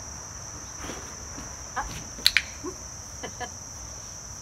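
Steady high drone of crickets. A little over two seconds in, a dog-training clicker gives one sharp double click, press and release, marking the puppy's behaviour.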